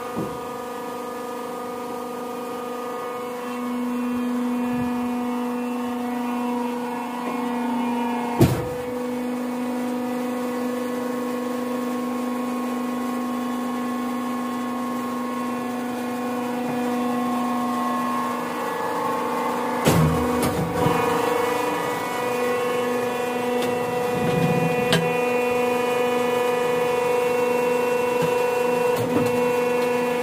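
Hydraulic coir pith block press running: a steady hum of its electric motor and hydraulic pump, with several steady tones and a deeper tone joining a few seconds in. A sharp clank about eight seconds in and a few knocks around twenty seconds in as the ram and steel rod work.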